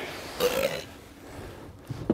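A man's short, throaty grunt of effort about half a second in as he heaves a large lake sturgeon; otherwise low background.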